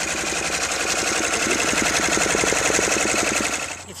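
Multi-needle embroidery machine stitching at a fast, steady rhythm of many stitches a second; it stops shortly before the end.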